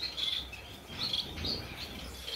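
Small aviary finches chirping: several short, high chirps spread across two seconds.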